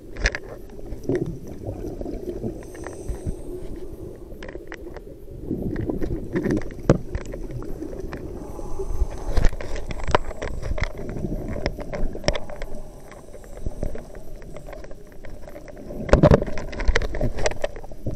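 Underwater sound of a scuba diver breathing through a regulator: exhaled bubbles rumble and gurgle in bursts every several seconds, the strongest about five seconds in and near the end, with scattered sharp clicks between them.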